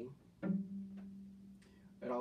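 A cello string plucked once (pizzicato), sounding the note G played with the fourth finger on the D string, ringing on and slowly fading.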